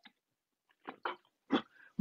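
A few faint, short mouth and throat noises from a man who has just sipped from a cup: swallowing and lip sounds, then a breath in before he speaks again.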